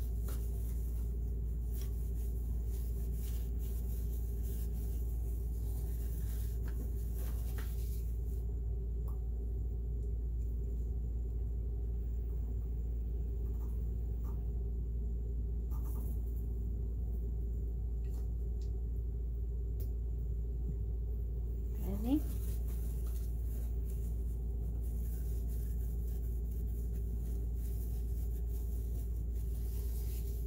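A steady low hum throughout, with faint rubbing and small clicks as hands wipe and handle parts of a sewing machine. A short rising sound about 22 seconds in.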